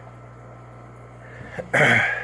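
A steady low hum with a faint even hiss, ending about a second and a half in with a short, loud throat noise from a man.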